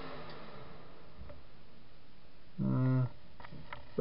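A man's short, wordless vocal sound, held on one flat pitch for under a second, about two and a half seconds in, followed by a few light clicks, over a steady faint background noise.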